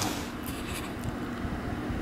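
Steady, low rumbling air noise at an open door to the snowy outdoors, with a few faint rubbing sounds.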